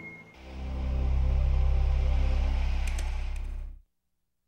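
Closing logo sting: a low, sustained droning musical tone that swells in as the previous music ends, holds steady with a slight wobble, then cuts off abruptly into silence just before the end.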